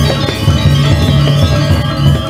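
Balinese gong kebyar gamelan ensemble playing loud, dense metallophone and gong-chime music, with many quick struck notes over low sustained tones.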